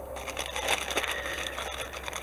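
Thin clear plastic parts bag crinkling as it is handled, a dense, continuous crackle.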